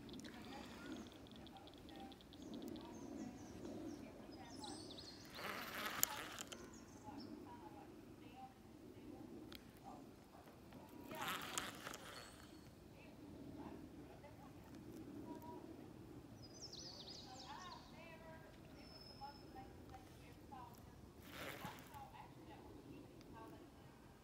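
Faint, distant chatter of a group of people's voices, with three short rushes of noise spaced several seconds apart.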